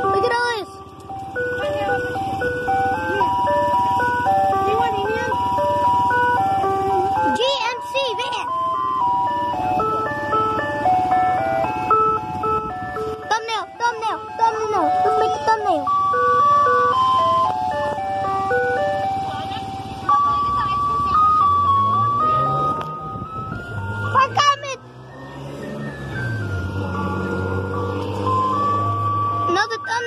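Ice cream truck's chime playing a tinkly electronic jingle over and over from its loudspeaker. A few short knocks come in, and in the last third a low engine hum rises and falls under the tune.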